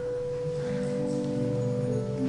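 Church organ starting the postlude: one held note sounds first, then lower notes join about half a second in to make a sustained chord.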